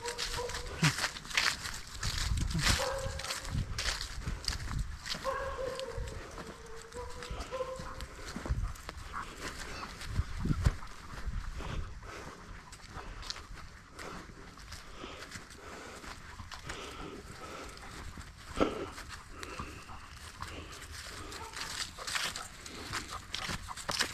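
A Bernese Mountain Dog whining softly a few times, mostly in the first several seconds. Around it are scattered rustles, footsteps and knocks from walking on grass and leaves with the dog on its leash.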